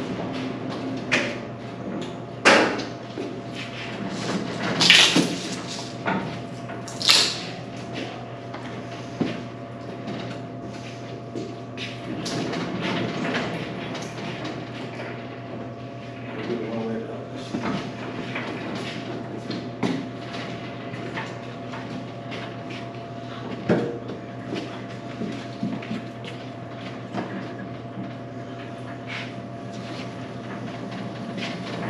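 Metal knocks, scrapes and rattles from commercial washers being shifted on a hand pallet jack, with a few louder bangs in the first seven seconds or so and lighter clatter after. A steady hum runs underneath.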